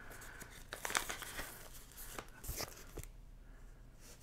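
Soft rustling and crinkling of a vinyl record's poly-lined sleeve as the LP is handled, a run of small rustles and clicks that dies away about three seconds in.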